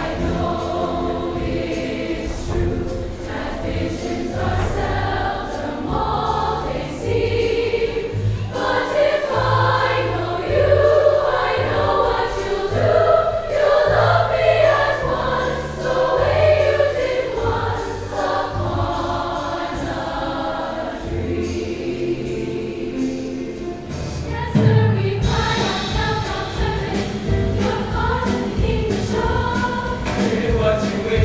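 High school choir singing a Disney show tune with accompaniment that carries low sustained bass notes under the voices. The music dips and swells again near the end.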